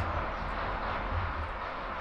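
Steady background noise: a low rumble under an even hiss, with no distinct events.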